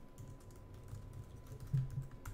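Computer keyboard being typed on: light, irregular key clicks, faint, with a short low hum near the end.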